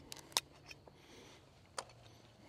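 Quiet, with a few short sharp clicks or taps: two close together near the start and one more near the end.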